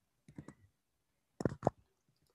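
A few short, sharp clicks in two small groups about a second apart, the second group louder.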